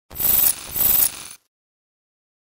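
Intro logo sound effect: two short, bright metallic-sounding hits about half a second apart, each trailing off briefly, then silence.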